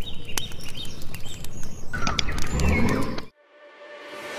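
Birds chirping over a noisy outdoor background, with scattered sharp clicks; it all cuts off suddenly a little over three seconds in.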